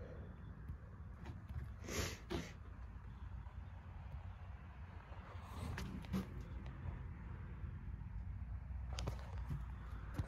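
Faint low rumble of handling noise with a few short knocks and rustles, two close together about two seconds in and more around six and nine seconds.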